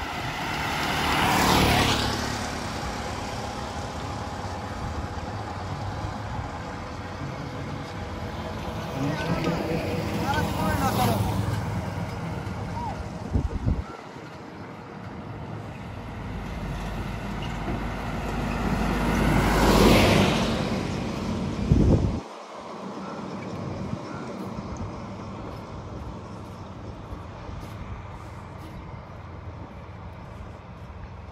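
Road traffic passing close by on a two-lane road: three vehicles go past one after another, each swelling up and fading away, a three-wheeled auto-rickshaw about a second in and a truck, the loudest, about two-thirds of the way through.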